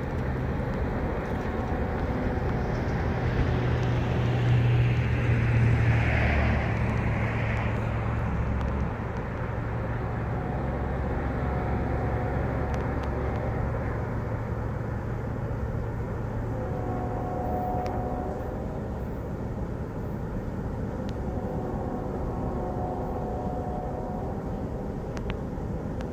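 Freight train rolling away down the track: a steady low rumble of its cars on the rails, loudest about five seconds in, then easing off but carrying on as the train draws into the distance.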